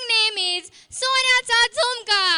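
A child's high-pitched voice in short phrases that rise and fall in pitch, with no backing music.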